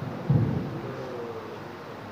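A single low, heavy thump about a quarter second in, fading within about half a second into a steady low room hum.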